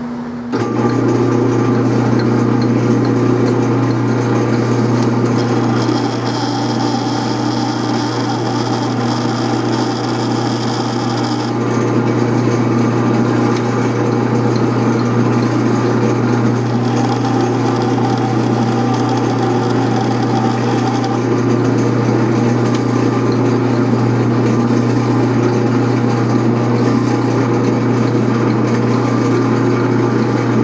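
Atlas metal lathe starting up about half a second in, then running steadily while single-point threading a left-hand 1/2-13 internal thread in a brass bushing held in a collet. A higher-pitched cutting sound joins twice, for several seconds each time.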